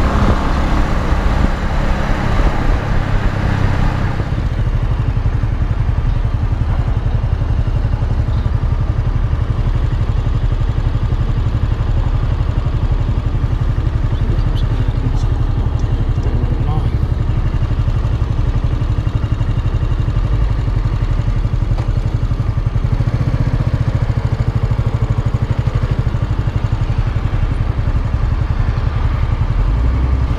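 Bajaj Avenger 220's single-cylinder engine running under the rider, with wind and road noise at first; after about four seconds the noise drops away and the engine settles to a slow, steady beat at low speed.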